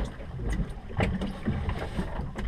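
Wind rumbling on the microphone with sea and boat noise, broken by a few light knocks.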